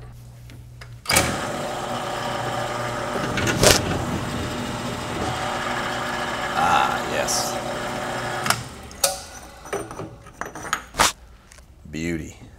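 Drill press motor running steadily with a countersink bit in the chuck, starting about a second in and stopping a little past two-thirds of the way through, with one sharp knock about a third of the way in. A few clicks and knocks follow after it stops.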